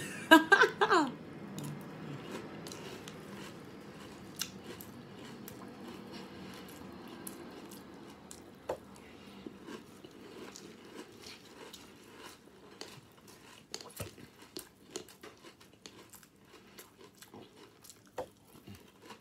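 A person chewing a spoonful of breakfast cereal softened in water, heard as many small scattered clicks. A short falling vocal sound comes at the very start.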